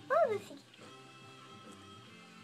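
A newborn Bull Pei puppy gives one short, high squeal that rises and then falls in pitch, just after the start, over steady background music.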